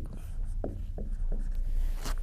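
Marker pen drawing on a whiteboard: a few short, faint strokes.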